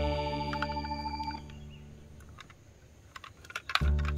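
Background music holds a chord that fades out about a second and a half in. Then comes a gap of small, scattered plastic clicks and taps from a toy truck being handled. The music starts again near the end.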